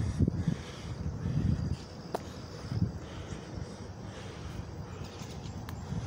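Outdoor background ambience: a low, uneven rumble with one short click about two seconds in.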